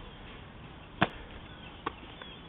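Two sharp slaps of a football smacking into a hand as it is caught one-handed, a loud one about a second in and a fainter one near the end.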